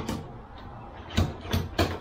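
Transducer pole mount for a kayak fish finder, handled and adjusted at its joints: three sharp knocks about a third of a second apart in the second half.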